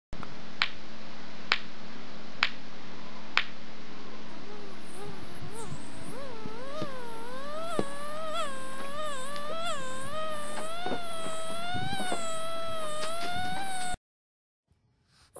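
Two stones knocked together four times, about a second apart, then a high whine that wavers up and down in pitch and grows steadier toward the end.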